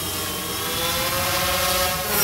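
Sound effect of a quadcopter drone's propellers whirring: a steady buzzing whine that rises slightly in pitch.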